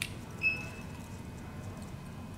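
Small handling sounds at a fly-tying vise as thread is wrapped on the hook: a light click at the start, then a brief high squeak about half a second in, over a faint steady room hum.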